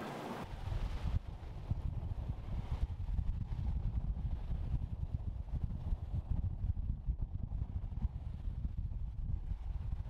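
Wind buffeting the microphone on open water: an uneven, gusty low rumble that sets in about half a second in.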